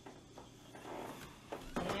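Faint handling sounds: a few soft clicks and knocks as small plastic cups are moved about on a wooden table.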